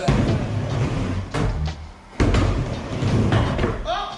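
Skateboard wheels rumbling as it rolls across a plywood mini ramp, with a sudden hard hit of board and wheels on the ramp about two seconds in. Music plays over it, and a short shout comes at the very end.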